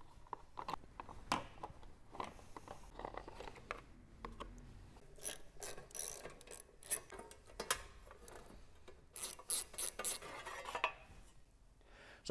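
Socket ratchet clicking in short runs as bolts are backed out of a mini bike's chain guard, with light metal clinks from the tool and parts. The rapid clicking comes in two spells, about five seconds in and again about nine seconds in.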